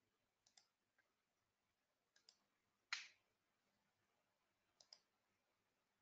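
Faint computer mouse clicks, several of them in quick pairs, with one louder click about halfway through.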